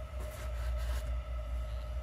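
Steady low hum with a faint steady whine over it, from equipment running in the room, with light rustling in the first second.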